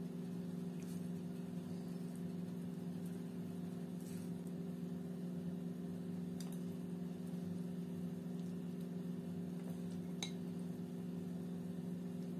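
A steady low electrical hum runs throughout. Over it come a few faint light clicks and taps, the loudest about ten seconds in, as grated raw potato is piled by hand onto meat patties in a glass baking dish.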